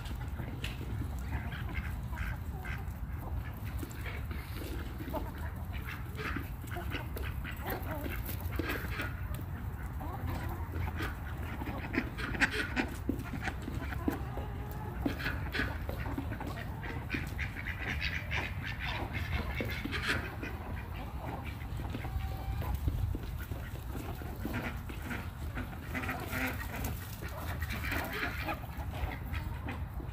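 Free-range chickens and ducks foraging: scattered duck quacks and hen calls come and go, over many short clicks and a steady low rumble.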